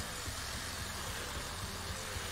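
Steady low hiss with nothing else standing out: room tone and microphone noise.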